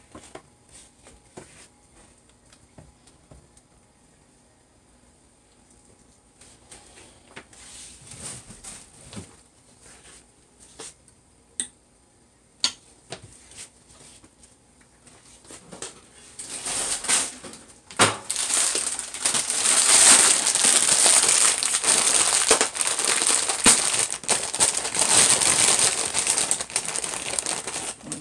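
A few scattered light clicks and taps at first, then, a little past halfway, a long stretch of loud, continuous crinkling of the plastic bag that holds the cream crackers as it is handled.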